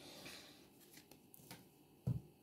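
Faint rustle and a few soft ticks of a deck of thin, soft divination cards being gathered in the hands from a fan into a squared stack.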